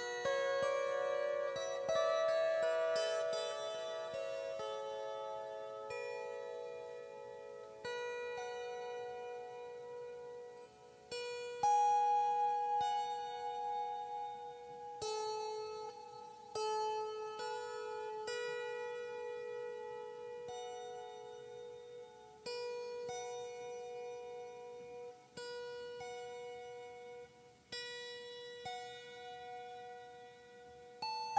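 Serenité Sonore Crescent Moon Lyre, a small wooden lyre, plucked by hand in a slow solo improvisation. Single notes and small chords ring on and overlap, with a fresh pluck every two or three seconds.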